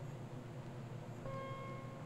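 Quiet hum and hiss of an old film soundtrack, with a faint held musical note coming in a little after a second.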